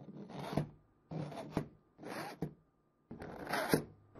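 3D-printed plastic coin sleeves sliding into a printed plastic holder: four scraping rubs of about half a second each, each ending in a knock as the sleeve seats.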